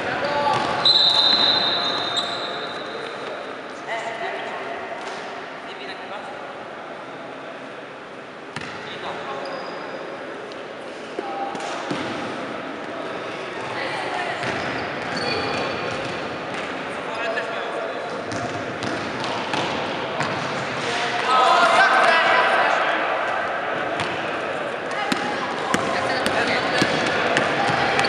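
Basketball bouncing on a gym court during play, with scattered sneaker squeaks and players and spectators calling out, echoing in a large hall. A referee's whistle sounds briefly about a second in, and voices get louder about three quarters of the way through.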